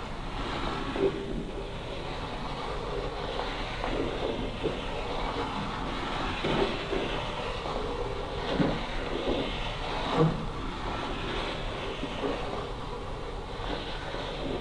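Ouija planchette sliding in figure eights across a wooden board: a steady rubbing scrape, with a few faint knocks along the way.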